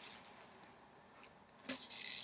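Faint handling noise, then near the end a plastic Nuby baby teething rattle starts rattling as it is picked up and shaken.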